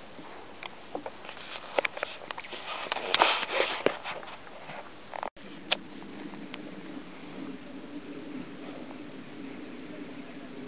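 Close rustling and irregular clicks of handling noise for about five seconds, then a sudden cut to a steady, quiet outdoor background with a low hum.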